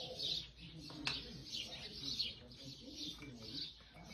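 Birds chirping in the background: short, high, falling notes repeated about twice a second. A single sharp click sounds about a second in.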